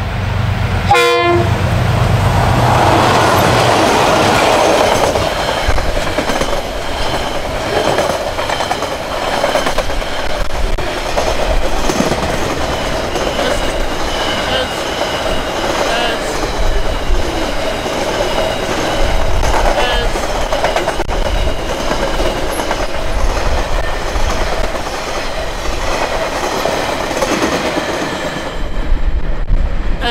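A diesel-hauled container freight train passing close by. The noise swells as the locomotive goes past in the first few seconds, then becomes a steady rumble and clatter of wagon wheels on the rails as the container wagons stream by. It fades near the end as the tail of the train recedes.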